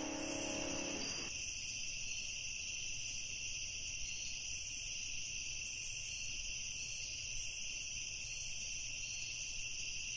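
Steady high-pitched chirring of night insects. A low held piano chord dies away about a second in.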